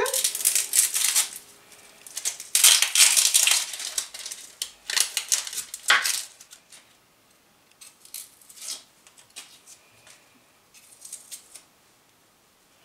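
Dry, papery onion skins crackling and rustling as an onion is peeled with a knife. There are three loud bursts of crackling in the first half, then fainter scattered crackles.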